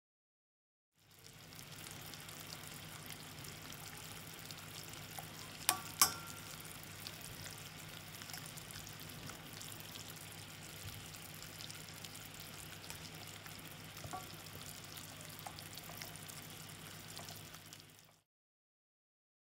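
Sugar syrup boiling in a stainless steel saucepan, a steady bubbling sizzle as it cooks toward 118 °C for Italian meringue. Two sharp clicks come about six seconds in.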